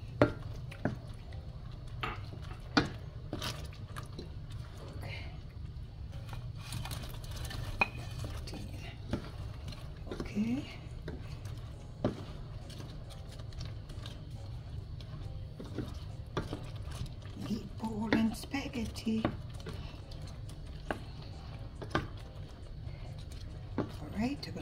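Wooden spatula stirring tomato sauce in a stainless steel pan, with scattered knocks and scrapes against the pan over a steady low hum.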